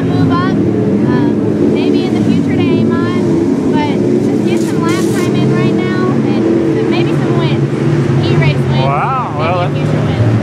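Race car engines running steadily in the background, with their pitch shifting now and then, while a young woman talks over them.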